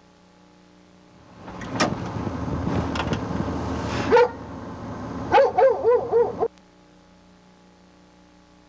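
A rough rustling, rumbling noise with a few sharp clicks, then a single short call and a quick string of short, high-pitched yelps from an animal; the sound cuts off suddenly.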